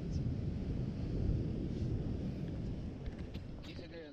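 Wind buffeting the microphone, a dense low rumble without tone, with brief faint voices near the end as it fades out.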